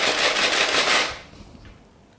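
Coins rattling inside a clear plastic jar as it is shaken, a dense clatter that stops a little over a second in.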